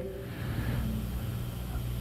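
Steady low hum and faint hiss of room noise during a pause in speech.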